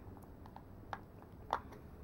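Two small clicks as a plastic bronzer compact is handled and opened: a faint one about a second in and a sharper one half a second later.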